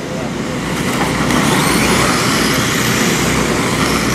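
A pack of electric dirt-oval RC race cars with 17.5-turn brushless motors running past on a clay track, a steady rushing noise that grows louder about a second in and holds.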